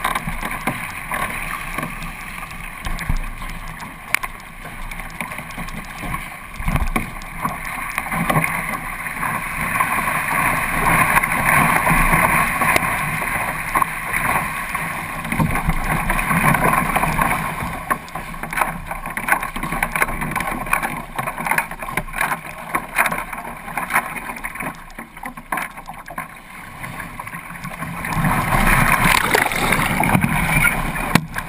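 Water rushing and splashing against a kayak's hull as it is paddled through choppy sea. The rush swells louder for a few seconds in the middle and again near the end.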